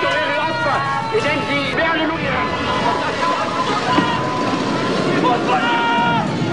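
Several voices shouting and calling over one another, with a steady high tone dying away in the first second or so.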